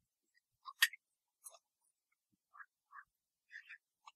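Marker pen squeaking on a whiteboard in a handful of short strokes while '= 0' is written, with the sharpest squeak just under a second in.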